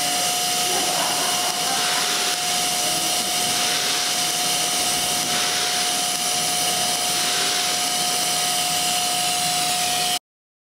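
DC stick welding arc on aluminum plate, running as a steady hiss with a steady high tone under it.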